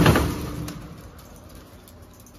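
Metal security screen door being pushed open: a loud, sudden rattle that fades out over about a second.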